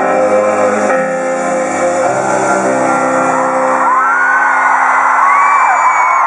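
A held piano chord rings out at the end of a song in a large arena. About four seconds in, high screams and whoops from the crowd rise over it and grow louder.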